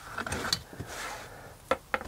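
Tools and cut leather being handled on a workbench: soft scraping and rustling as a steel ruler comes off the leather, then two sharp clicks close together near the end.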